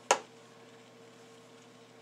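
A single sharp click just after the start, then quiet room tone with a faint steady hum.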